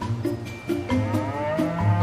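Long-horned cow mooing once: a drawn-out low that starts about a second in and rises in pitch, heard over background music with a steady beat.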